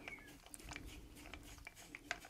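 Faint, scattered light clicks and taps of wooden toy parts being handled, as cherry-wood wheels are fitted back onto their hubs on the chassis.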